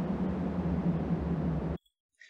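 A wind sound-effect recording playing back: steady wind noise that cuts off suddenly near the end.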